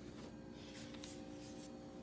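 Quiet room tone with a faint steady hum.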